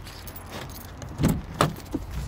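A car door being opened: a quiet background, then two sharp clicks with a light metallic rattle a little over a second in.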